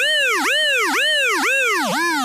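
Electronic sound effect: a pitched tone swooping up and down about twice a second, over and over.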